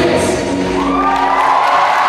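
The end of a live pop song with amplified music and vocals, giving way about a third of the way in to an audience cheering, with children's shrieks over it.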